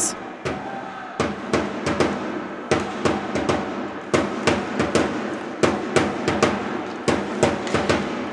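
A drum beaten in a quick, steady rhythm, about two to three strikes a second.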